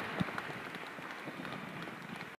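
Faint audience noise: scattered claps, taps and shuffling, with one slightly louder knock just after the start.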